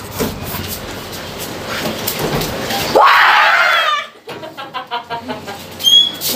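A rooster crows once, about three seconds in, followed by a quick run of chicken clucks.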